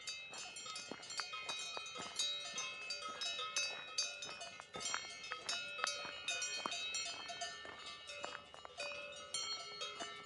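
Several cowbells clanking at irregular, overlapping intervals, each strike leaving a short metallic ring.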